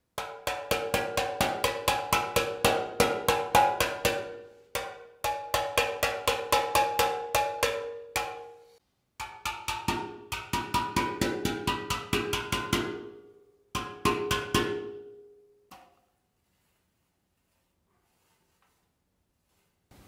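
A small hammer tapping quickly across the notes of an unburned steel pan, smoothing them before heat-treating; every stroke sets the steel ringing with pitched metallic tones. The tapping comes in four runs of about five strokes a second, separated by brief pauses, and stops near the end.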